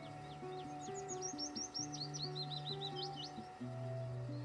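A small songbird singing a quick run of high chirping notes that speeds into a trill and stops near the end, over background music with slow low notes.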